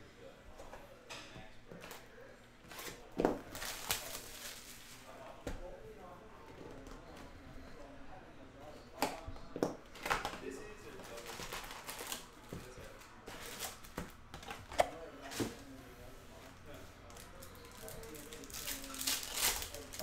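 Hands handling a cardboard box of trading cards and taking a pack out of it: scattered soft clicks and rustles of cardboard and wrapper, with a few sharper taps.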